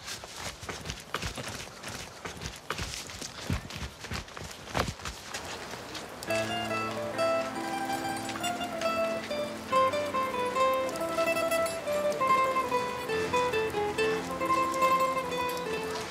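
Hurried footsteps on paving for the first few seconds, then background music of held chords with a melody over them, starting about six seconds in.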